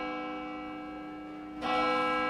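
A tower clock's bell striking. One stroke rings on and slowly fades, and the bell is struck again about one and a half seconds in.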